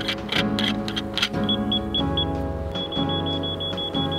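Background music, and over it the high electronic beeps of a laser-level receiver on a measuring staff: a few quick beeps about a second and a half in, then a near-steady high tone from about three seconds in.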